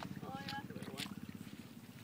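Small electric motor of a Riviera 80 RC model boat running with a low, fast buzz that fades as the boat moves away across the pond.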